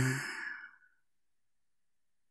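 The breathy, drawn-out last syllable of a woman's softly spoken word "deeper", fading out within the first second and followed by silence.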